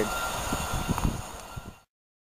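Container freight train rolling away along the line, its rumble fading, with a few low knocks from the wagons. The sound cuts off abruptly near the end.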